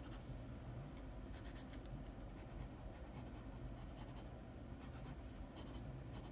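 Wood-cased graphite pencil scratching on sketchbook paper in a run of short, faint strokes.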